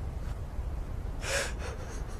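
A man's sharp, sobbing gasp for breath about a second in, followed by two shorter, fainter breaths, over a steady low rumble.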